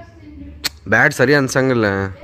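A single sharp click about a third of the way in, followed by loud talking in a voice.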